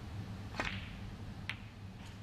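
Snooker cue striking the cue ball with a sharp click about half a second in, played off the rest. About a second later the cue ball clicks against the pink.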